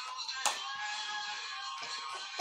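Quiet music with long held notes, and a single sharp click about half a second in.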